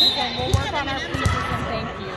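A referee's whistle blows briefly to start the rally. Then a volleyball is bounced twice on the hardwood gym floor by the server before serving.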